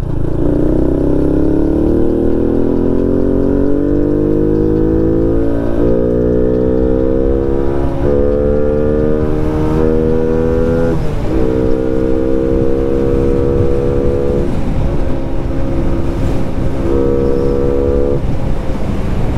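Honda Wave underbone motorcycle with a '54' big-bore engine build, heard from the rider's seat under hard acceleration. The engine note climbs steadily for the first several seconds, then holds high with brief dips at about 6, 8, 11 and 14.5 seconds as it changes up through the gears. Wind rumbles on the microphone underneath.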